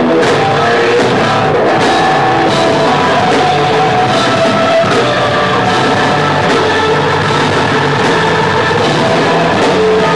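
A rock band playing live and loud: electric guitar in front over bass guitar and drum kit, a dense unbroken passage.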